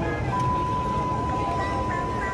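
A steady, unwavering electronic tone comes in about a third of a second in and holds, over background music and a low steady rumble.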